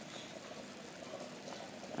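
Dumplings frying gently in a small amount of oil over a low flame: a steady, quiet sizzle.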